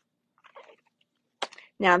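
Faint rustle of plastic-wrapped product packaging being handled, then a single short, sharp click; a woman's voice starts near the end.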